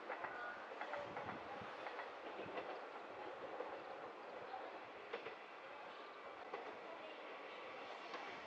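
JR West KiHa 120 diesel railcar approaching from far down the line, heard faintly as a steady rail hum with scattered light clicks from the track.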